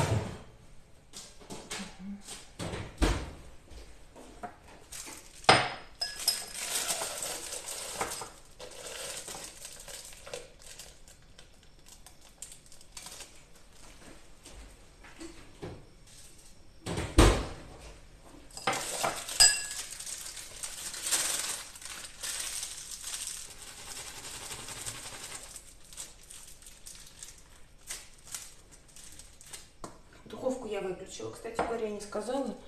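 Kitchen handling sounds: clinks and knocks of a drinking glass and utensils on the countertop, with two sharp knocks about five and seventeen seconds in the loudest, between stretches of rustling as a plastic piping bag is handled.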